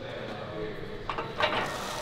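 Quiet gym room tone with faint voices, and two small clicks a little over a second in.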